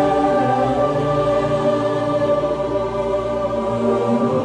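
Choral music: voices holding long, sustained chords that change slowly.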